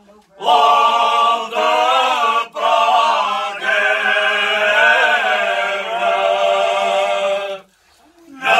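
A group of men singing a cante alentejano moda unaccompanied, several voices together in parts. It comes in short phrases with brief breaths between, then a long held note, and the phrase ends just before the end.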